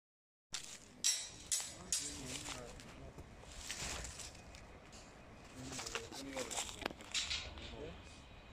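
Faint, indistinct voices, with three sharp knocks in the first two seconds.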